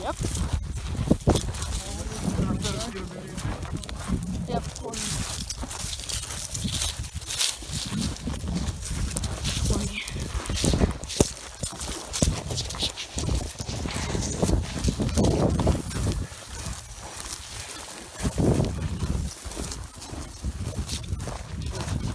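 Footsteps crunching through dry grass and sagebrush at an irregular pace, with brush rustling against clothing. A low rumble sits on the phone's microphone throughout.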